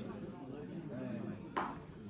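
Quiet talking in the background, with a single sharp clink of tableware, a spoon or dish being knocked, about one and a half seconds in.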